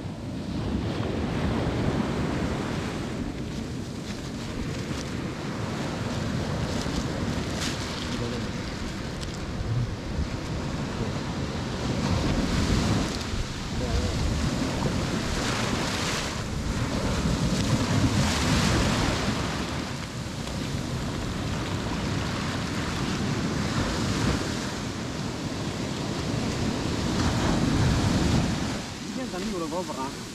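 Sea surf washing in and out around the feet at the water's edge, a continuous rush of foaming water that swells several times as waves come in, with wind buffeting the microphone.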